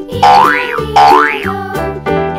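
Two cartoon sound effects, each a quick whistle-like glide that rises and falls back, about three-quarters of a second apart, laid over cheerful children's background music.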